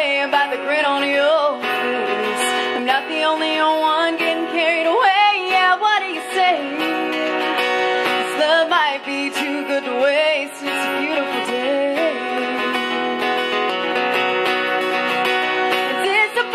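A woman singing an original country-folk song while strumming an acoustic guitar, her voice wavering on held notes.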